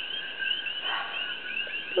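Continuous high-pitched chirping in the background, repeating several times a second, with a brief soft rustle about a second in.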